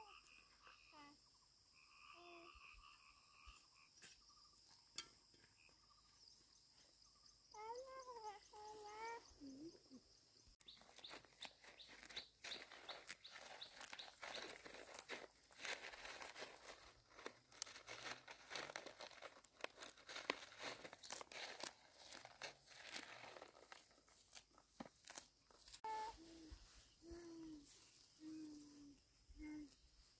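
Weeds being pulled up by hand from dry, stony soil: a dense run of rustling and crackling from about ten seconds in to near the end. Before it, faint bird chirps over a steady high insect buzz.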